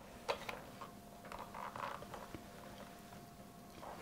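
Faint rustling and soft handling sounds of a fabric strip being folded and pressed with a small hand iron, with a short click about a third of a second in and a faint steady hum beneath.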